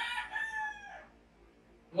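A rooster crowing once in the background, its high call tailing off with a slight drop in pitch about a second in.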